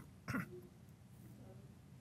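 A person briefly clears their throat about a third of a second in, followed by faint room tone.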